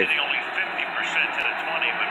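Television broadcast audio of an NFL game heard through the TV's speaker: the commentator talking over steady background noise, thin and muffled.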